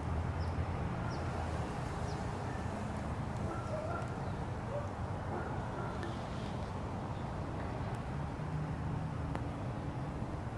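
Steady low outdoor rumble, like distant traffic or wind, with a few faint bird chirps in the first couple of seconds.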